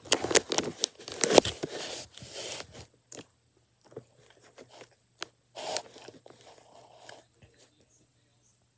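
Person biting and chewing fast food close to the microphone: dense crunching and rustling over the first three seconds, then quieter chewing with scattered clicks.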